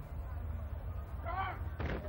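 A loud, steady low rumble, with a brief high-pitched call that bends up and down about one and a half seconds in and a sharp knock just before the end.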